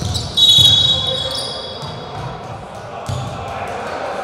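A referee's whistle blows one long, loud blast about half a second in, stopping play. It sounds over the thuds of a basketball dribbled on a hardwood court, with a murmur of voices in the hall.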